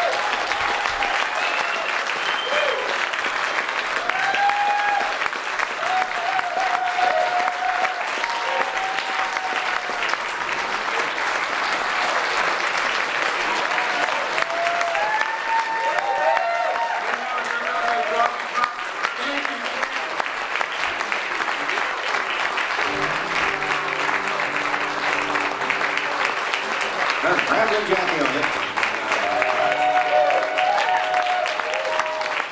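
Live audience applauding steadily, with scattered whoops and shouts above the clapping. In the last several seconds a few sustained instrument notes sound under the applause.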